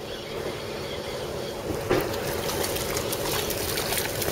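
Steady outdoor background at the edge of a pond with faint water sounds, and one brief soft knock about two seconds in.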